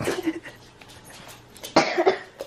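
A toddler girl crying in two short, harsh sobbing bursts about a second and a half apart.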